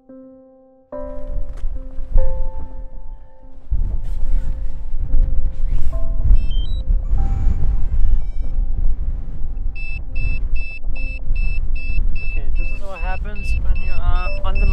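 Strong wind buffeting the microphone. About ten seconds in, a drone remote controller starts an electronic warning beep, repeating about two or three times a second: an error alert.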